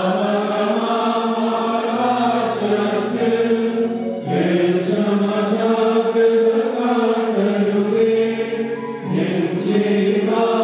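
A group of men chanting an Orthodox liturgical hymn together, in long sung phrases with brief breaks about four seconds in and again near the end. A low note is held steadily beneath the voices at times.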